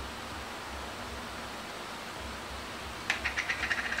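Steady low room hiss, then near the end a quick run of about ten light clicks and taps from a spoon and small plastic food containers being handled while toppings go onto a bowl of chili.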